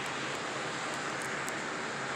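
Steady, even hiss of background noise with no distinct sound events, only a few faint ticks.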